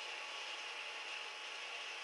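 Faint steady hiss of room tone, with no distinct sound events.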